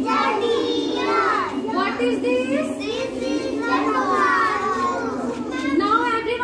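A group of toddlers chattering and calling out at once, many high voices overlapping, with high rising-and-falling squeals about a second in and again around four seconds.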